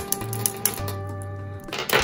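Round stone-like beads of a necklace knocked against each other by hand, giving a few sharp, clear clicks. She takes this clear clink, rather than a dull one, as a sign that the beads are stone or glass and not plastic. Steady background music plays underneath.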